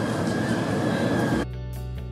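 Steady outdoor background noise of traffic and the street. It cuts off about one and a half seconds in, where background music with plucked guitar begins abruptly.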